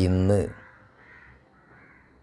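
A man's voice for about half a second at the start, then only faint room tone.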